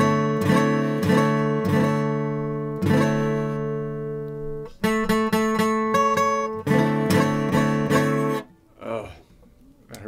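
Steel-string acoustic guitar, chords struck one after another and left to ring, one held chord ringing out by itself about three to four and a half seconds in. The playing stops about a second and a half before the end.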